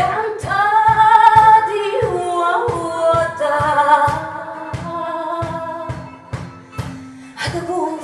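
A woman singing in bulería style over a steady cajón beat and guitar: she holds one long note for about two seconds, then moves through an ornamented, stepping melody that tails off near the end.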